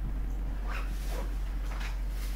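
Steady low electrical hum, with three faint short high-pitched sounds in the second half.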